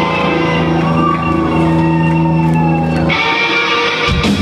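Live rock band playing an amplified instrumental passage led by electric guitar, with held low chords. About three seconds in the low notes drop away, leaving higher guitar notes.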